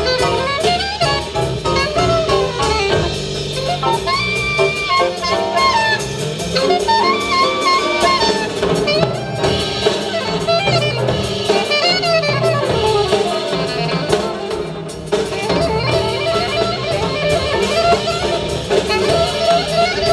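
Live jazz quartet: an alto saxophone plays a running melodic line over acoustic piano, upright bass and a drum kit.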